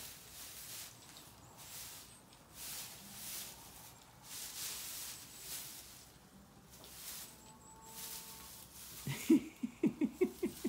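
Straw bedding rustling in soft, irregular bursts as feet move through it. Near the end, a woman's quick laugh in short loud pulses breaks in.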